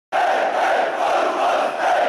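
A large crowd shouting together, loud and continuous, cutting in abruptly just after the start.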